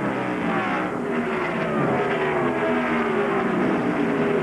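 Several ARCA stock cars' V8 engines running flat out at racing speed. Several engine notes sound at once and drift slowly lower in pitch as the cars pass.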